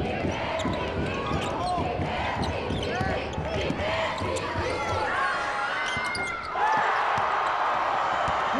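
Basketball game sound: sneakers squeaking on the hardwood court and the ball bouncing, over the noise of the arena crowd. The crowd gets louder about six and a half seconds in.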